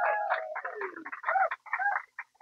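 Chicken calls, most likely a sound effect: one drawn-out call falling in pitch, then a run of short choppy clucks that stop just before the end.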